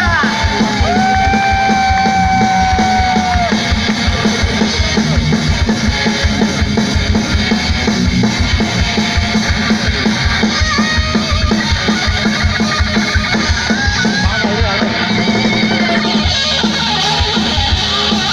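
A live band playing through a PA system, with fast, steady drumming and guitar. A long held note sounds from about a second in and lasts a couple of seconds.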